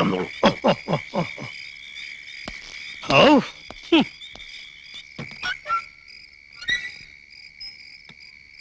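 Night ambience: a steady, high-pitched chirring of crickets with repeated frog croaks, a quick run of short falling croaks about half a second in and a louder call a little after three seconds.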